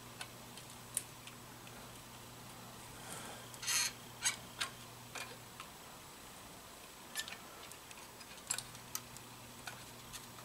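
Soldering iron tip and wires being worked against the ignition stator plate of a 1974 Honda XR75, giving faint scattered light clicks and ticks, with one brief hiss about four seconds in. A low steady hum runs underneath and stops for about three seconds in the middle.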